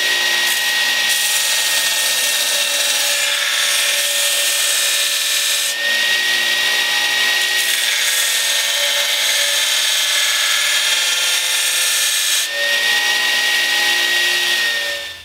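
Belt grinder running with a leaf-spring steel knife blade pressed against the abrasive belt, a continuous rasping hiss over a steady high whine, in the rough grind of the blade. The sound shifts briefly about six and about twelve seconds in, as the blade is moved on the belt.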